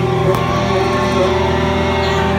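Live rock band playing, holding sustained chords over a steady bass, recorded on a phone; a single brief knock about a third of a second in.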